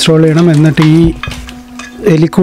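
A man's voice for about the first second, over a steady low hum that runs on after the voice stops.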